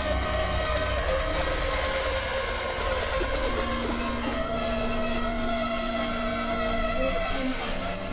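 Layered electronic synthesizer drones: several steady held tones over a noisy, buzzing bed. A lower held tone comes in about three and a half seconds in and drops out near the end.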